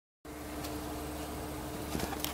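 Dead silence, then about a quarter second in a steady engine hum cuts in: an idling engine giving a low drone with a steady mid-pitched tone over a light hiss.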